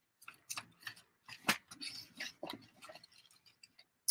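Paper envelopes being handled, opened and fitted together by hand: a faint, irregular run of crinkles, rustles and light taps.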